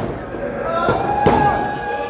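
Several sharp thumps and slaps on a wrestling ring's canvas, with a spectator letting out a long held yell in the middle.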